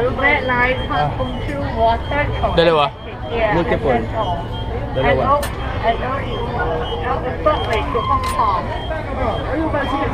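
People talking over the steady low rumble of a busy subway station.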